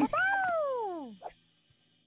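A single cat meow: one long call that rises briefly and then slides down in pitch over about a second.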